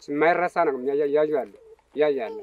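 A person speaking: one long phrase with drawn-out, wavering syllables that trails off near the end.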